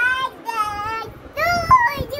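A young child's very high voice in three drawn-out, sing-song notes, wordless singing or squealing in play.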